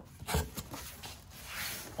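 Hands handling bubble wrap in a cardboard box: a single knock about half a second in, then plastic crinkling that grows louder near the end.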